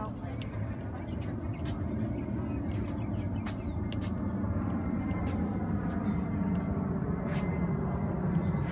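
A low rumble that grows steadily louder, with scattered light clicks and faint voices over it.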